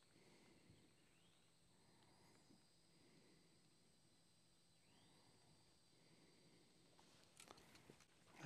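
Near silence: faint outdoor ambience, with a few faint clicks near the end.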